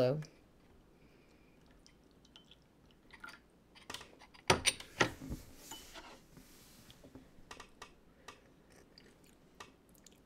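Small clay teaware being handled and set down on a bamboo tea tray: scattered faint clicks, with a couple of sharper knocks about halfway through.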